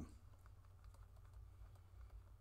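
Faint, scattered ticks and scratches of a pen writing on a notebook page, over a steady low hum.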